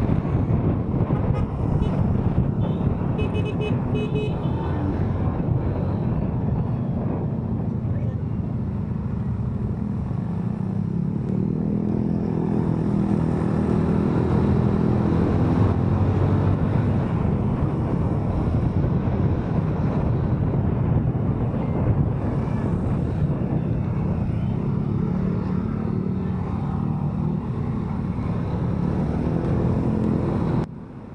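Kymco SZ150 scooter's engine running on the move in traffic, with wind on the microphone. A horn gives a few short toots about three seconds in.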